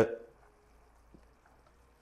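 Near silence: quiet room tone with a faint steady hum and one soft tick about a second in.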